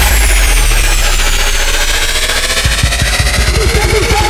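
A breakdown in an electronic dance music DJ mix: a held deep bass note under a hissing sweep that falls slowly in pitch. The kick drum comes back in about two and a half seconds in.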